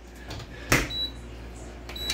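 A single sharp knock a little under a second in, over faint steady background noise.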